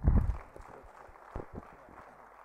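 Handling noise from a podium gooseneck microphone as it is grabbed and moved: heavy bumps at the start, then a rustling hiss and another bump about one and a half seconds in.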